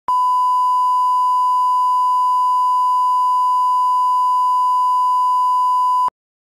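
Steady test tone (line-up tone) that goes with broadcast colour bars: one unwavering pure beep at a single pitch, cutting off suddenly at the end.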